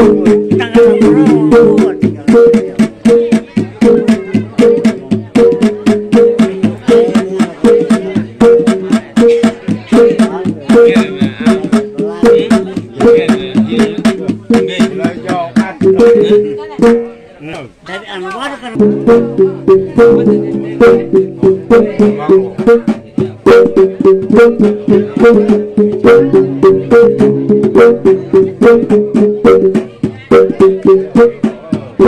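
Sumbanese tabbung gong ensemble playing mourning music: a fast, repeating pattern of pitched gong strokes over drum beats. The playing breaks off for about two seconds a little after the middle, then starts again.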